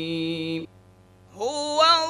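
A single voice in melodic chanted recitation holds one long note that breaks off about two-thirds of a second in. After a short pause, the next phrase begins with a rising slide in pitch.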